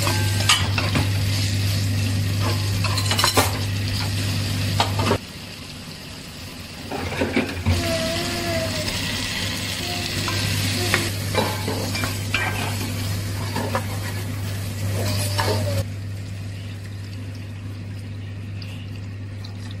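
Ingredients sizzling in hot oil in a pot while a spatula stirs, scraping and clicking against the pot, over a steady low hum. The sizzle breaks off for about two seconds about five seconds in, then carries on with more clicks.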